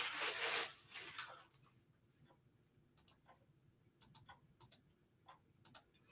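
Faint handling noises: a short rustle in the first second or so, then a few scattered light clicks over the following seconds.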